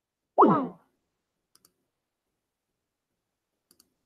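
A short wordless vocal sound from a man, falling in pitch, near the start, followed by a few faint clicks from a computer mouse.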